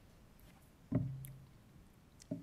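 A man's brief low vocal sound about a second in, at the pitch of his speaking voice, fading out over about half a second, with a few faint clicks around it.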